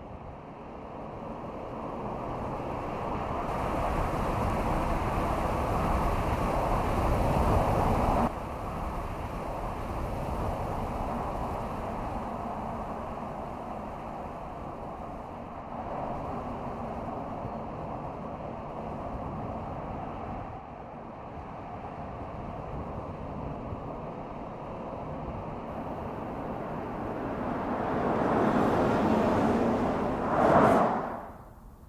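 All-electric Mercedes CLA driving on an open road, heard as tyre and wind noise with no engine note. The sound changes abruptly a few times as shots change, then swells near the end as the car passes close by.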